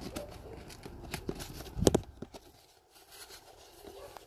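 Handling noise from cardboard boxes and papers being moved: light rustles and clicks, with one louder knock about two seconds in.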